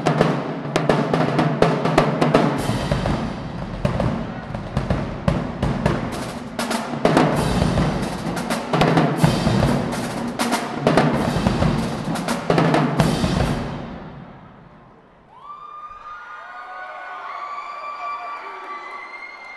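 Marching drumline playing a dense cadence on snare drums, multi-tenor drums and tuned bass drums, which fades out about 14 seconds in. Voices follow near the end.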